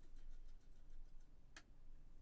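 A few faint light ticks, then one sharper click about one and a half seconds in: a paintbrush knocking against the side of a water cup as it is dipped for rinsing.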